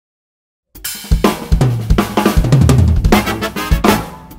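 Silence for under a second, then an acoustic drum kit with Zildjian cymbals comes in playing a funk groove of snare, bass drum and cymbals, over a band track with a sustained bass line.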